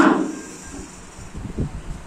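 A pause in a man's speech into a microphone: his last word trails off in the room's echo, then low room noise with a few faint low thumps.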